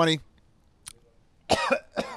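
A man coughs, a short harsh cough starting about one and a half seconds in, after a faint click about a second in.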